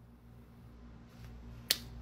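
A single sharp click over a low, steady hum, near the end.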